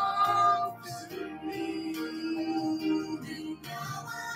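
Amateur men singing into a handheld microphone, holding long drawn-out notes.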